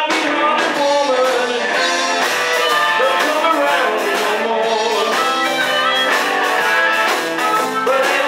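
Live blues-rock band playing electric guitars and drums, with an amplified harmonica cupped to a handheld microphone.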